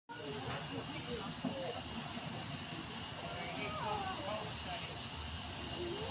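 Narrow-gauge steam locomotive 762 hissing steadily as it runs light slowly into the station, with faint voices talking in the background.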